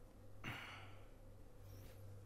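A man's single sigh, a breathy exhale about half a second in that fades away, over a low steady hum.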